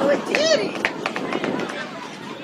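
Children's voices calling out on a soccer pitch, with one high, short shout about half a second in over a background of other voices. A couple of sharp knocks follow about a second in.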